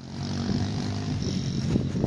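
A four-wheeler (ATV) engine running steadily, getting louder about half a second in.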